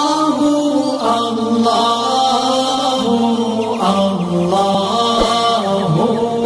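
A man's voice singing a long wordless line of held notes that slide from pitch to pitch, the chant-like opening of a Bengali Islamic ghazal (gojol), with a couple of soft low thumps near the end.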